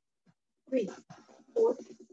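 A person's voice in short bursts after a brief silence: two louder calls, the first falling in pitch, about a second apart.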